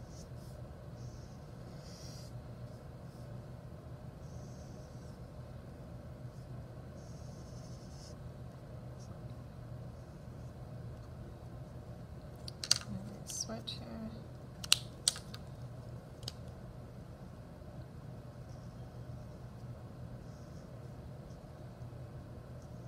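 Soft scratching of a Sharpie permanent marker tracing lines on paper, over a steady low hum. A little past halfway there is a short run of sharp clicks and taps from markers being handled.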